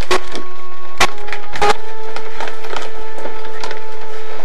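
A folded sheet of paper being opened and handled, with a few sharp crackles, over steady held tones.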